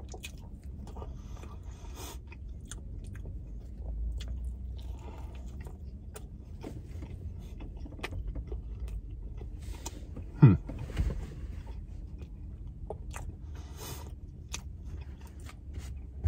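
Close-up chewing of a mouthful of pretzel-bun burger and pickle, with many small wet mouth clicks and smacks over a low steady rumble inside a car. About ten seconds in comes a short, louder hummed 'mm' that falls in pitch.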